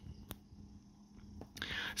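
A quiet pause: faint room tone with a low hum, a single small click about a third of a second in, and a soft breath near the end as speech is about to resume.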